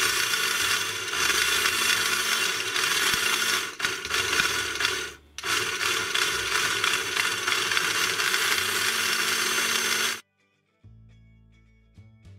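Small electric motor and plastic gearbox of a remote-control toy car whirring as it spins the rear wheels freely, lifted off the ground on a stand. It runs, stops briefly about five seconds in, runs again, and cuts off just after ten seconds.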